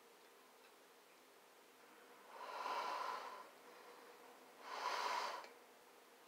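A person breathing out through the nose twice, each breath lasting about a second and a couple of seconds apart.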